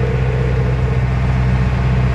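A Mercedes-Benz 608 light truck's four-cylinder diesel engine running steadily at road speed, heard inside the cab as an even low drone with road noise.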